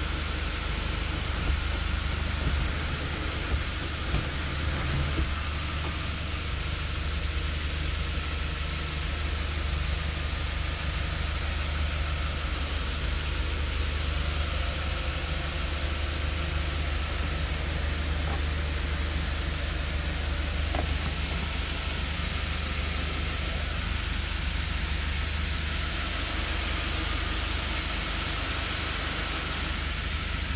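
Kia Sorento's engine idling steadily, heard inside the cabin as a constant low hum under an even hiss of air.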